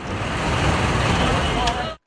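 Outdoor vehicle and traffic noise, a steady engine rumble with faint voices in the background, which cuts off abruptly at the end.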